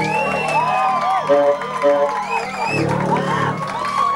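Live rock band at the close of a song, with guitars ringing out in long held and gliding tones after the drums stop, while the audience whoops and cheers.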